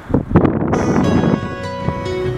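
A brief loud rush of wind on the microphone, then background music begins about a second in and carries on.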